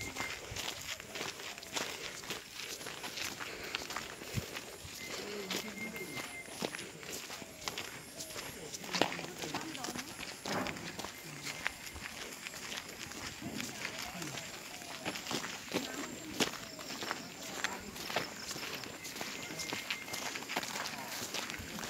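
Irregular footsteps of a person walking, with faint voices talking in the background.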